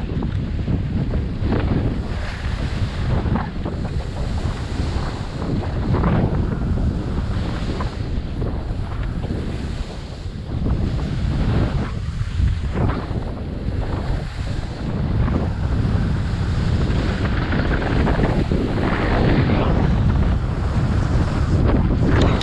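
Wind buffeting a GoPro camera's microphone at speed down a groomed ski slope, loud and continuous, with a swish of edges carving on packed snow every second or two as the turns come.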